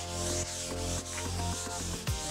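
Paper towel rubbing over a freshly stained oak board, wiping off the excess wood stain, over background music with held notes.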